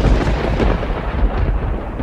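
Thunder rumbling over a rain-like hiss, loud and steady after a sudden start just before.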